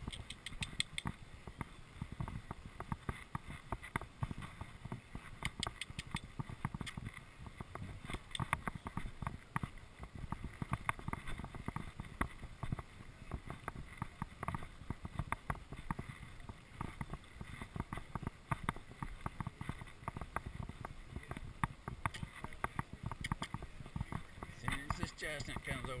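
A horse being ridden on a dirt racetrack, heard from a rider's chest-mounted camera: a steady stream of irregular clicks, knocks and rustling from hooves, tack and the camera mount jostling.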